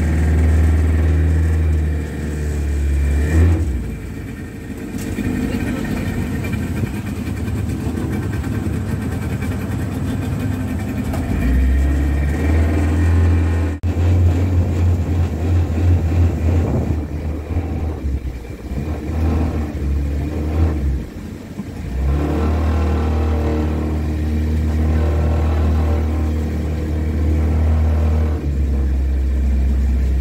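Motorboat engine running steadily, with a heavy low rumble that drops away and returns a few times.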